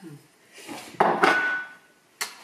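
A crockery bowl set down or stacked with a sharp clatter about halfway through, followed by a short, high ring.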